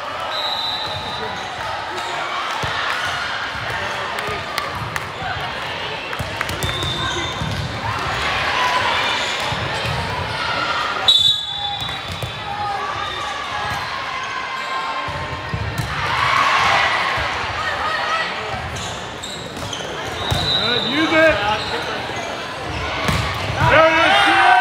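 Chatter echoing in a large gym during a volleyball rally, with the thuds of the ball being hit and shoes squeaking on the court. There is a short referee's whistle about halfway through, and shouting and cheering rise near the end as the point is won.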